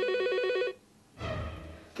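Mobile phone ringing with an electronic trill, a tone rapidly warbling between two pitches, cutting off about three-quarters of a second in.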